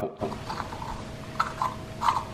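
Volcanic-stone oil-absorbing face roller rolled across the skin of a cheek, giving a faint scratchy squeak like chalk.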